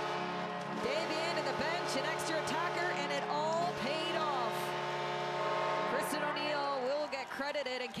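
Arena goal horn sounding over a cheering crowd right after a goal, a steady chord of several held tones that cuts off about seven seconds in.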